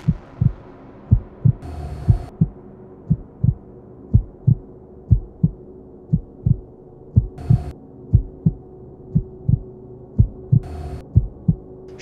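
A trailer sound-design heartbeat: steady pairs of low thumps over a droning hum. Three short bursts of electronic static cut in, and a hit at the very start fades away.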